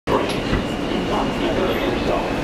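Subway car running, heard from inside: a steady low rumble and rattle with a thin, steady high whine over it.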